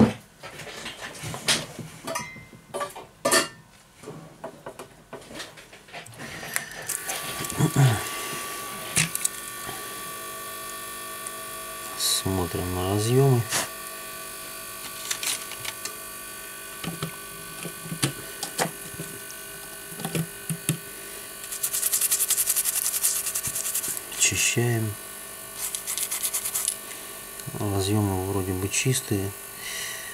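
Clicks and taps of small phone parts being handled. From about seven seconds in, an ultrasonic cleaner runs with a steady electric hum, cleaning a water-damaged phone's system board.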